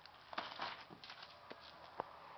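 Faint handling noises: a cluster of rustles and clicks, then a few single clicks, as a plastic-wrapped pack of stick rockets is picked up.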